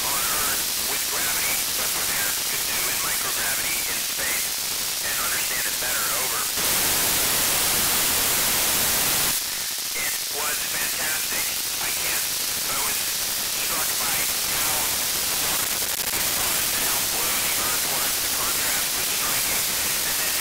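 A man's voice on the International Space Station's narrow-FM amateur-radio downlink at 145.800 MHz, received by a software-defined radio, faint and broken under heavy static and too weak to follow. About six and a half seconds in the voice drops out for about three seconds, leaving only a steady hiss, a little louder, before the weak voice returns.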